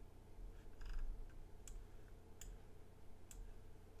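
Faint computer mouse clicks: a soft flurry about a second in, then three sharp single clicks in the second half, over a faint steady hum.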